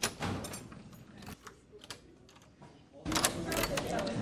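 A few sharp knocks and clicks at a wooden classroom door, then the door is pushed open about three seconds in, letting in the louder chatter of the room.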